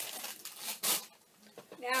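Plastic packaging crinkling as it is handled, ending in a short burst of rustle just under a second in, followed by a brief near-silent gap.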